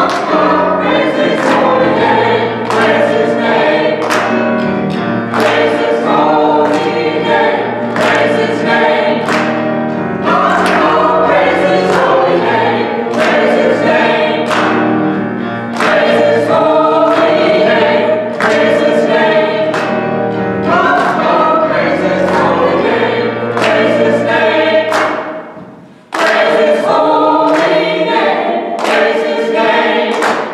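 A small church choir singing with instrumental accompaniment, sustained bass notes under the voices and a steady beat of regular strokes. The music drops away briefly about 25 seconds in, then comes back.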